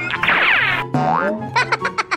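Cartoon sound effects over background music with a steady bass line: a cascade of quick falling pitch glides, then springy bending tones about a second in, giving way to a fast run of short repeated notes near the end.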